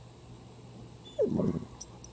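A dog makes one short vocal sound close by, just over a second in, falling in pitch and lasting about half a second, as it noses at a cicada on the ground.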